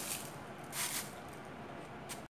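A brief soft rustle of curry leaves in a mixer-grinder jar as a hand handles them, about a second in, over faint background hiss.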